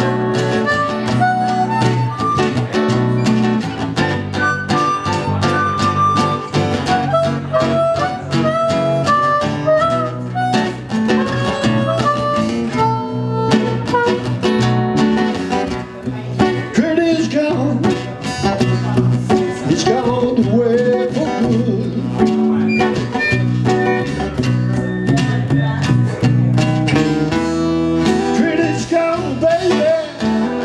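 Harmonica playing a bending, wailing melody line through a vocal mic over strummed acoustic guitars, played live by a small band.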